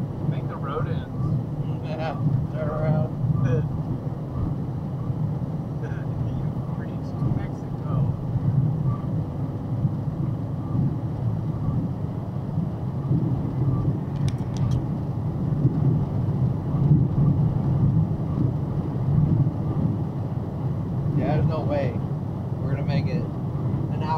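Steady low drone of a truck's engine and tyres heard from inside the cab while cruising at about 60 mph on the highway.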